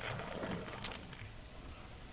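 Small electric motor and gear mechanism of a customised Hot Wheels car whirring briefly about the start, followed by a few sharp plastic clicks.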